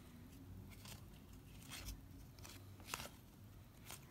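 Faint handling noise of a stack of baseball trading cards being flipped through by hand: a soft rustle with a few light clicks, the clearest about three seconds in.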